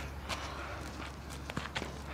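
Footsteps on a clay tennis court: light, irregular steps.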